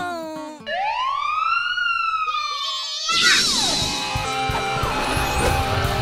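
Added cartoon sound effects: a short falling tone, then one long whistle-like wail that rises and slowly falls. About three seconds in, a sudden loud burst leads into busy music with siren-like glides.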